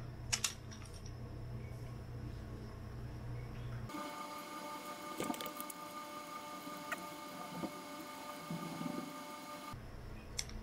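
Faint handling sounds, a few small clicks and soft rubbing, as a headphone ear pad is pressed back onto its earcup. Under them runs a steady background hum that changes character abruptly about four seconds in.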